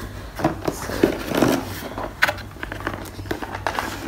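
Cardboard box being opened and its paper-and-card packaging handled: rustling and a few sharp clicks, the sharpest about two seconds in, over background music.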